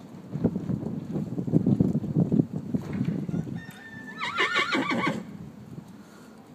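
A horse whinnies once, a quavering call lasting about a second and a half that starts a little past halfway. Before it there is low, uneven thudding of hooves on the soft arena footing.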